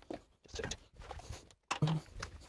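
Quiet room with faint, scattered handling and shuffling noises. There is a brief low sound near the end.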